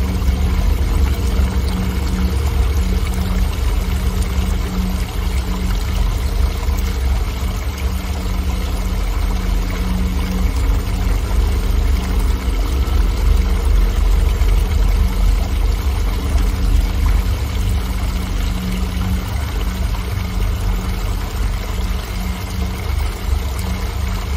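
Small waterfall spilling over a mossy rock ledge into a shallow pool: a steady, loud rush and splash of pouring water with a deep low rumble, unchanging throughout.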